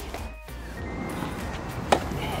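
Background music, with one sharp crack of a tennis ball struck by a racket on a forehand near the end.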